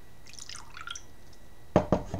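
Tea dripping and sloshing faintly in a teacup as it is handled, then two sharp knocks near the end.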